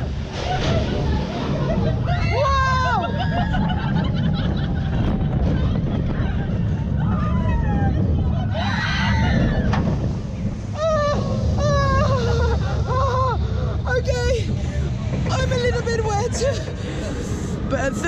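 Rumble of wind and ride noise from a Vliegende Hollander water-coaster boat car, with a splashdown into the water about halfway through, then the boat running across the water. Riders' voices call out over it.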